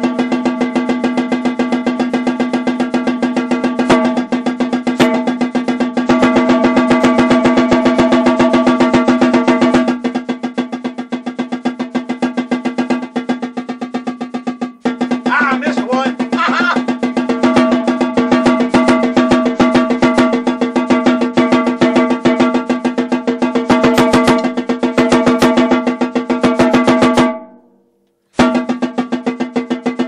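Marching snare drum played in fast, even continuous strokes, the drum ringing at a steady pitch under the strokes. The playing turns softer for a few seconds in the middle, then loud again, and breaks off for about a second near the end.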